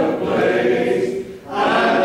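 Congregation singing together in unison, with a short break in the singing about one and a half seconds in.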